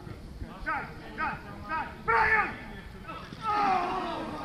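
Men's voices calling out: a string of short shouts, the loudest about two seconds in, then a longer call near the end.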